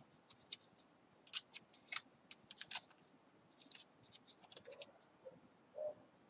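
Paper masking tape being handled and pressed onto drawing paper: clusters of short, dry crackles, in two bursts.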